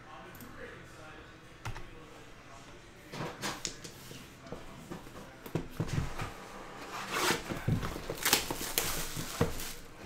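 Plastic shrink wrap crinkling and tearing as it is pulled off a trading-card hobby box. The crackling comes in loud, irregular spells and grows louder in the second half, after a quiet start with a single sharp click.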